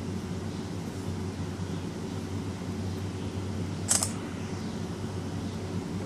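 Samsung Galaxy S5 screenshot shutter sound, a single short click about four seconds in, as a screenshot is captured by palm swipe. Under it runs a steady low background hum.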